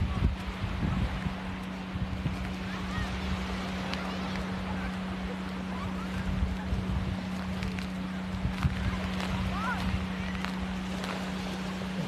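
Small waves washing onto a sandy shore, with wind buffeting the microphone and a steady low hum. Faint voices of people in the distance come through a couple of times.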